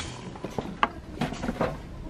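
A few light knocks and rattles from goods being handled at a metal shopping trolley, over quiet supermarket background.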